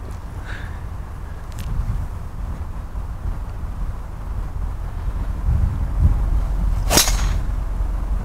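Golf driver striking a ball off the tee: one sharp crack about seven seconds in, over a steady low background rumble.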